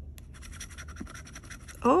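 A metal scratcher tool scraping the coating off a paper scratch-off lottery ticket in quick, short strokes, stopping just before the end.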